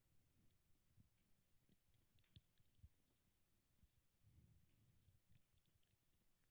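Near silence, with faint scattered clicks and soft low thuds close to a handheld microphone as communion bread is eaten.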